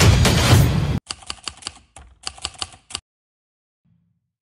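Background music stops abruptly about a second in. It is followed by two quick runs of keyboard-typing clicks, about six each, as an edited sound effect.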